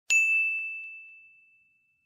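A single bell ding sound effect: one bright, high strike that rings out and fades over about a second and a half. It is the notification-bell cue of a subscribe reminder.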